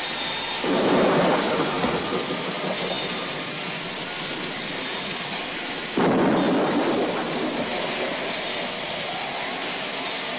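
A thunderstorm: heavy rain falling steadily, with a swell of thunder about a second in and another about six seconds in, each dying away over a few seconds.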